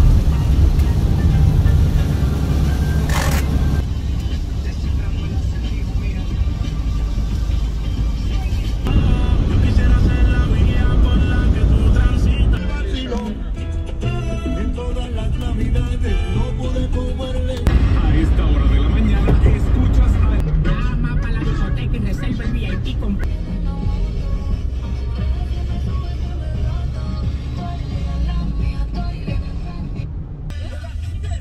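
Steady road and engine rumble inside a moving vehicle's cabin, with music playing over it and indistinct voices at times.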